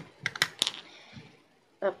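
A quick cluster of about four sharp clicks as small glass nail polish bottles are handled, set down and picked up, then a short lull.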